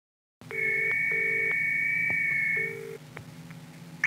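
Telephone line tones: a steady high two-note tone with a lower tone pulsing on and off three times beneath it. It stops after about two and a half seconds, leaving a faint line hiss with a few clicks.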